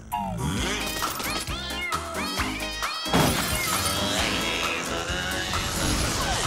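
Cartoon title theme music mixed with comic character voice noises, with a sudden crash about three seconds in.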